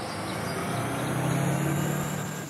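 A motor vehicle driving past: engine hum and road noise growing louder, loudest just before the end.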